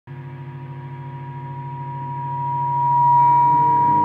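Electric guitar feedback through an amplifier: one steady high howl that swells louder over about three seconds, over a low pulsing hum. Lower sustained notes join near the end.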